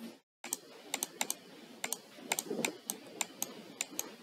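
Irregular clicking of a computer keyboard and mouse, about fifteen sharp clicks over a faint background hiss.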